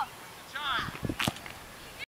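A person's short laughing call, followed by two sharp knocks about a quarter second apart.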